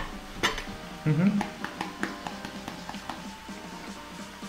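Background music playing, with a few light clicks and taps as a small spice shaker is handled and shaken.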